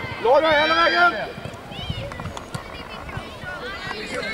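A loud, high-pitched shout lasting just under a second near the start, with other shorter calls and shouts from voices on the pitch afterwards.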